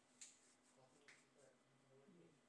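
Near silence: faint room tone with two faint, sharp clicks about a second apart.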